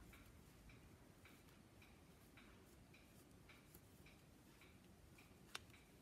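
Near silence with faint, even ticking, about two ticks a second, and one sharp click near the end.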